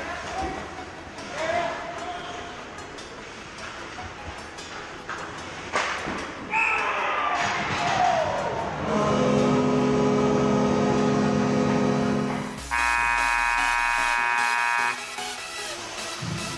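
Ice hockey play with skates and stick clatter, then a rink's end-of-period horn sounding in two long steady blasts of different pitch, the second higher, each a few seconds long: the signal that the period is over.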